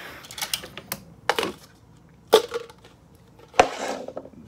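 A drink cup being handled: a few scattered sharp clicks and knocks, the loudest about two and a half seconds in and near the end.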